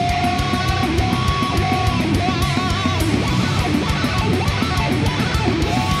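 Instrumental heavy metal passage with no vocals: distorted electric guitars and drums, with a lead melody of held notes that waver in pitch about halfway through, over steady cymbal hits.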